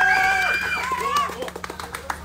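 Excited voices: one long held shout in the first second, then shorter calls and chatter, with scattered sharp clicks through the rest.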